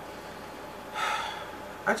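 A man's quick, audible intake of breath through the mouth about a second in, just before he speaks again, over a steady faint room hiss.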